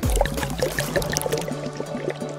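Carbonated soda glugging and gurgling out of two upturned plastic bottles as they drain into a watermelon, over background music.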